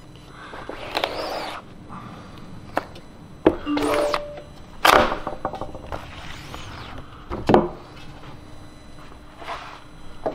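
A rubber squeegee dragged across the ink-loaded mesh of a hand screen-printing press, making several swishing print and flood strokes, with a few sharp knocks from the hinged screen frame and squeegee.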